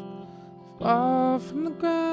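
A man singing over electric guitar. A held guitar chord fades away, then a sung note slides up into pitch about a second in and holds briefly, and another sung note begins near the end.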